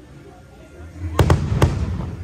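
Aerial fireworks shells bursting overhead: a quieter first second, then three sharp bangs in quick succession a little past a second in, over a low rumble.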